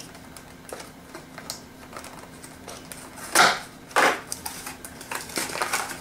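Clear plastic blister packaging crackling and crunching as a charging cable is cut and worked free of it, with scattered small clicks and two loud crackles about three and a half and four seconds in.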